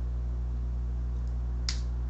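Steady low electrical hum, with a single sharp click near the end.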